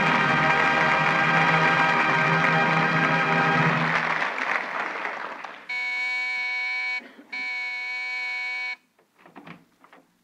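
Brass-led orchestral music plays and fades out by about halfway. An electric doorbell buzzer then sounds twice, each buzz steady and about a second and a half long: a radio sound effect announcing a caller at the door.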